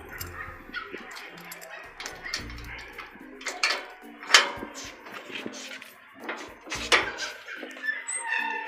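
A few sharp knocks, the loudest about halfway through and near the end, over scattered animal calls.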